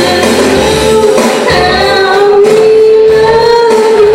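A woman singing karaoke over backing music, holding one long note through the second half.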